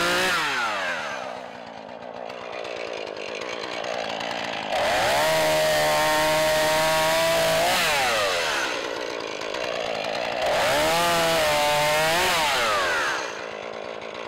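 Two-stroke petrol chainsaw dropping from full revs to idle, then revved up and held at full speed twice for two to three seconds each, falling back to idle in between, while trimming the tops of wooden posts.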